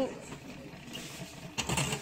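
OXO salad spinner's plastic pump knob being pressed down and clipped into its locked position, giving a short run of plastic clicks about a second and a half in.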